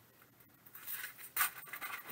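A foil trading-card pack wrapper crinkling and tearing as it is ripped open, starting a little under a second in, in several uneven rustles.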